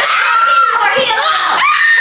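A group of preteen girls shrieking and talking over one another in very high-pitched voices, the squeals gliding up and down in pitch.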